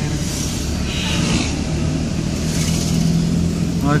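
Engine hum and tyre and road noise of a moving car, heard from inside its cabin: a steady low drone that does not let up.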